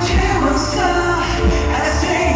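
Live pop music: a male vocalist singing into a microphone over a band backing with a steady bass.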